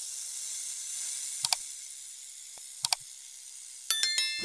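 Sound effects of a like-and-subscribe button animation: a steady high hiss, two quick double mouse clicks about a second and a half apart, then a bright notification-bell chime near the end.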